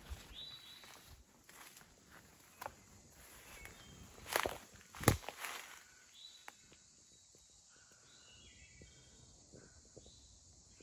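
Footsteps through grass and weeds, soft and irregular, with two louder steps about four and five seconds in.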